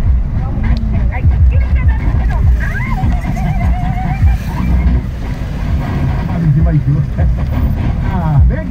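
Steady low engine and road rumble heard from inside a moving vehicle, with a radio voice talking over it.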